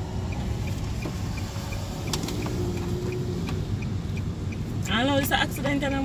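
Car cabin noise while driving, a steady low rumble of engine and road, with a faint quick ticking of the turn signal at about two or three ticks a second. A voice speaks briefly near the end.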